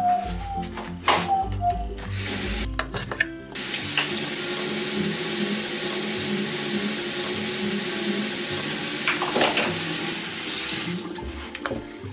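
Bathroom sink tap running into the basin. It comes on about two seconds in, runs with a steady rush, and stops near the end.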